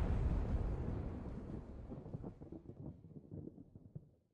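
Deep rumble of a rockfall sound effect dying away, with scattered crackles and small knocks, fading steadily and stopping just after the end.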